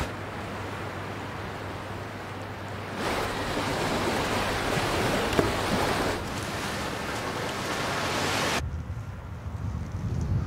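Sea waves and wind: a steady rushing that grows louder about three seconds in as surf breaks along the shore, then drops away abruptly near the end to a quieter low rumble.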